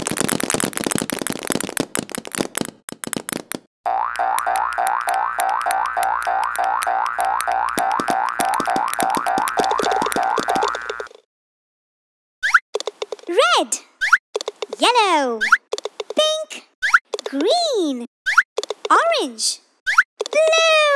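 Cartoon sound effects: a dense clatter of many small balls pouring down for the first few seconds, then a rapidly repeating rising whirr for about seven seconds, a second of silence, and a string of cartoon boings, each rising then falling in pitch, as balls bounce into the holes of a toy.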